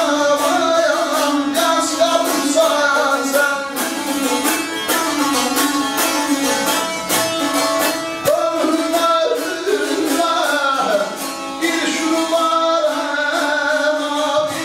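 A voice singing over a fast-strummed plucked string instrument, heard live in the hall.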